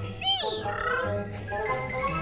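A cartoon cat's short, arched meow-like cry at the start, followed by background music with held notes.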